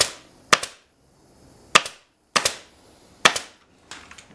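Pneumatic staple gun firing staples through webbing into a wooden chair frame: five sharp shots, unevenly spaced about half a second to a second apart.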